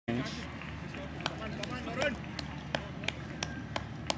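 Voices of people talking at a distance over outdoor background noise, with a steady run of sharp ticks, about three a second, starting about a second in.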